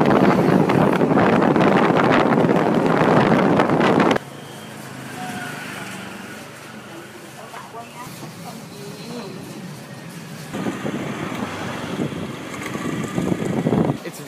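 Loud, steady rushing street noise that cuts off suddenly about four seconds in, giving way to a much quieter room with faint voices; louder outdoor noise returns near the end.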